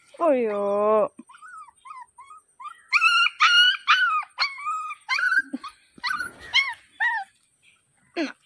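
A young puppy whining and yelping in a run of short, high-pitched cries, many rising then falling, louder from about three seconds in. At the very start a woman's voice briefly calls out.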